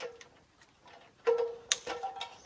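Metallic clinks and knocks, several with a short ringing tone, from rigging gear and the aluminium ladder as a man works ropes high in a tree: a few light ones, then two loud ones in the second half.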